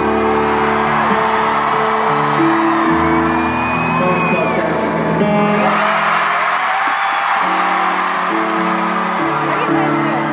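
Slow sustained chords on a stage piano over a loud arena crowd cheering and whooping. The piano drops out for about two seconds midway while the crowd noise carries on.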